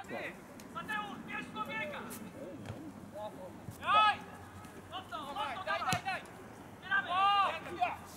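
Shouted calls on a football pitch, two of them loud, at about 4 and 7 seconds, with a single sharp thump of a football being kicked hard about six seconds in.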